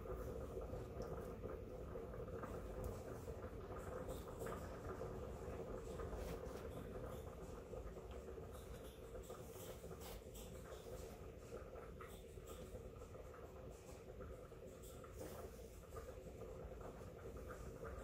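Bare hands rubbing vegetable shortening into flour in a stainless steel bowl: a faint, continual scratchy rustling of the crumbly mix between the fingers and against the bowl, as the fat is worked into the flour until it turns sandy. A low steady hum runs underneath.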